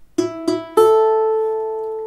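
Prima balalaika's three open strings plucked one after another: two short notes on the same pitch, then a higher note that rings on and slowly fades. These are the instrument's E–E–A tuning.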